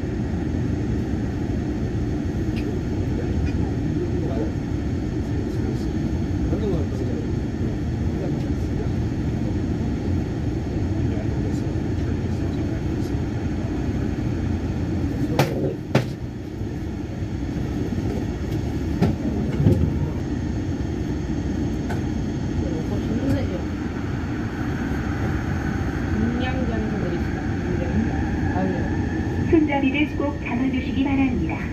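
Yongin EverLine light-metro train running on steel rails: a steady low rumble of wheels on track, with two sharp clicks around the middle and a rising whine near the end.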